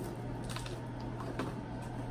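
A cracker bitten and chewed, giving a few faint crisp crunches over a steady low hum.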